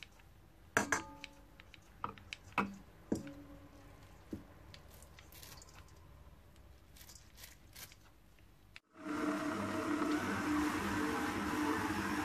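Scissors snipping soft glass noodles into a bowl of ground-meat filling, several separate quiet snips. About nine seconds in, a kitchen stand mixer starts running steadily with a low hum, its flat beater churning the meat filling; this is the loudest sound.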